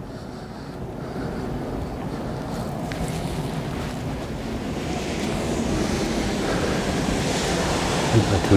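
Steady rushing of water released from a reservoir dam's outlet into the valley below, growing louder and brighter over the last few seconds, with wind rumbling on the microphone.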